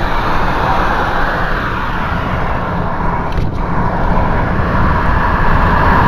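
Steady road noise inside a car moving at motorway speed: tyre and wind rumble through the cabin, with a brief click about three and a half seconds in.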